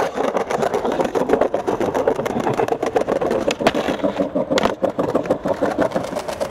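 Skateboard wheels rolling over a tiled plaza, a steady rough rumble, with a couple of sharp clacks of the board a little past the middle.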